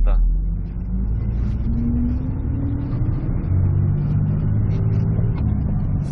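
Engine of a 5-ton knuckle-boom crane truck pulling away from a stop, heard inside the cab, rising in pitch as it gathers speed.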